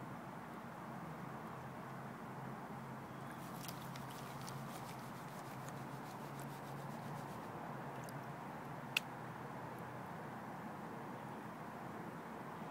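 Water and sand sloshing and washing over the riffles of a plastic Keene gold pan as it is swirled and dipped in a tub of water, with faint gritty ticking in the middle and one sharp click about nine seconds in.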